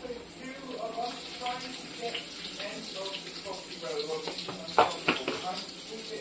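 Greens frying in an iron kadhai on a gas stove with a steady sizzle, while a metal spoon stirs and clinks against the pan. The sharpest clink comes nearly five seconds in, with a few lighter ones after it.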